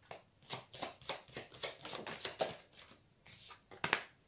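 Tarot cards being handled: a quick run of soft papery flicks from the deck for the first two and a half seconds, then a sharper snap near the end as a card is laid down on the spread.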